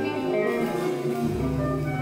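Free improvised music led by a hollow-body electric guitar playing sustained notes through an amplifier, with a low note held from a little past halfway.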